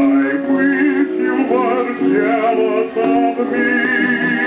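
A 1920s dance-orchestra recording played from a Vocalion 78 rpm shellac record on a turntable: a wavering, vibrato melody line over the band, changing note every fraction of a second.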